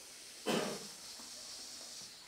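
Air hissing out of hand-held inflated balloons as they are let partly deflate. It begins suddenly about half a second in, loudest at first, then carries on as a steady hiss.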